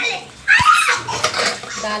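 A child's high-pitched voice calling out in the kitchen, with a short knock about half a second in.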